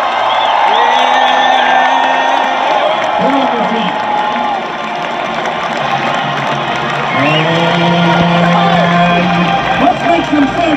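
Marching band's brass holding long sustained chords over a cheering stadium crowd: one held chord near the start and another about seven seconds in, each lasting two to three seconds.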